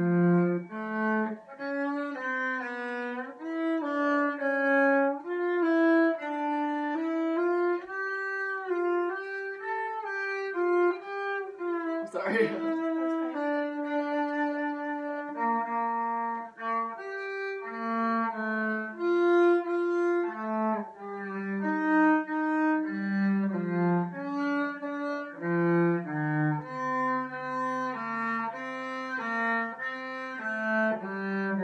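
Solo cello bowed by a student, a continuous line of notes moving from one to the next, with a long low note held near the end and one sharp knock about twelve seconds in. The notes are centred in pitch, but the playing stays at an even, moderate loudness with little dynamic contrast.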